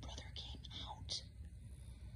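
Soft whispering: short breathy bursts with no voiced tone.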